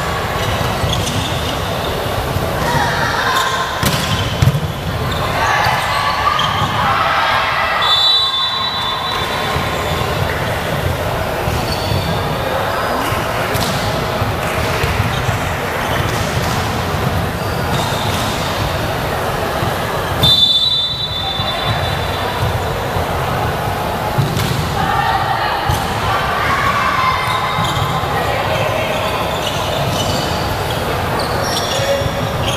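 Volleyball being played in a large sports hall: the ball is struck and hits the floor among players' and spectators' voices. A referee's whistle blows two short blasts, about a quarter and two-thirds of the way through.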